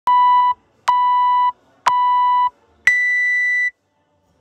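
Workout interval timer's start countdown: three short beeps about a second apart, then one longer, higher beep that signals go.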